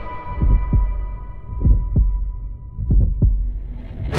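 Heartbeat sound effect: three low double thumps about a second and a quarter apart, with a high steady tone fading away under the first half.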